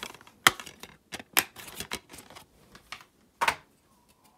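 Plastic DVD case being opened and the disc unclipped from its hub: a run of sharp plastic clicks and snaps, the loudest about half a second in and near the end.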